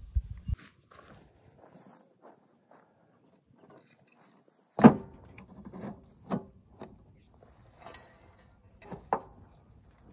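A metal shovel scooping composted mulch out of a Kubota LA525 tractor's steel loader bucket. A sharp clank about five seconds in is followed by a few lighter knocks and scrapes as the blade digs into the bucket.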